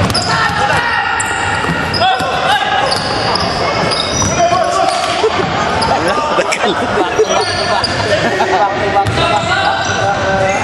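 Basketball game on a hardwood gym court: the ball is dribbled on the floor while sneakers give short high squeaks. Players and spectators call out, all echoing in the big hall.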